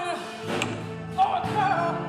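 A woman singing with her own harp accompaniment: a held sung note ends right at the start, a harp string is plucked about half a second in, and a short, wavering sung phrase follows about a second in over sustained low harp notes.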